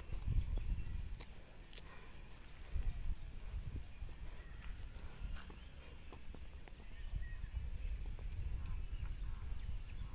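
Faint footsteps of a child walking on bare dirt, scattered soft clicks over a low, fluctuating rumble.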